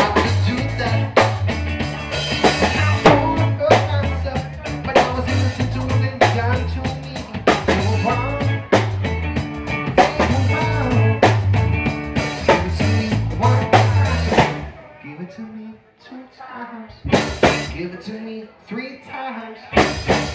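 Live band of electric guitar, bass guitar and drum kit playing a driving rock song with a steady beat. The band stops about fifteen seconds in, leaving quieter sounds broken by a few loud sharp hits.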